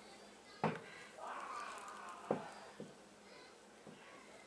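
Faint, muffled voices of a man and children playing in a room upstairs, heard through the ceiling. A few light taps stand out over them, the sharpest about half a second in and just after two seconds.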